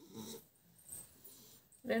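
Mostly quiet room with a few faint, short vocal sounds, then a person starts speaking loudly just before the end.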